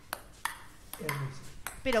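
Ping-pong ball bouncing, played as a sound effect: sharp clicks, three in the first second. A man's voice comes in about a second in.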